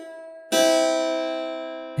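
A pure major third sounded on a keyboard instrument. The tail of the preceding notes fades, then about half a second in the two notes are struck together and ring, slowly dying away.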